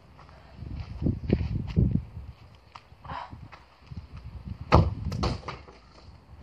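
Low thumps of crutches and feet on artificial turf as a football is lined up, then a sharp kick of the ball about three-quarters of the way through, followed by a few quicker knocks.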